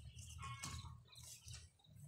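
Faint bird calls, a few short chirps about a third of the way in, over a low steady rumble.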